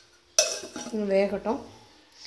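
Metal lid set down on a metal cooking pot with a sharp clatter about half a second in. The clank is followed by about a second of pitched, wavering sound before it dies away.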